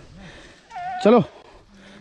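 A short, quavering goat bleat, followed at once by a louder spoken word.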